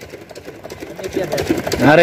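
A lull filled with faint background voices, followed near the end by a man starting to speak up close.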